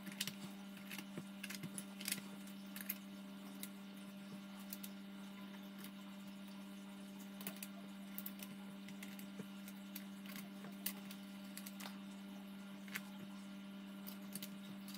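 Scattered faint light clicks and taps of small wooden letter pieces being set into place on a wooden sign, over a steady low hum.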